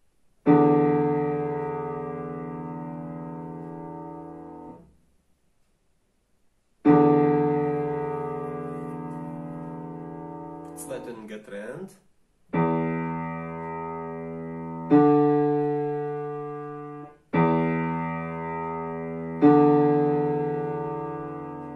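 Digital piano playing dictation chords, each struck and left to ring and fade: two long ones about six seconds apart, then four more at roughly two-second intervals. A brief noise sounds between the second and third chords.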